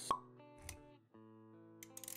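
Animated-intro sound effects over music: a sharp pop just after the start, a softer low thud a little later and a brief drop-out, with held musical notes underneath.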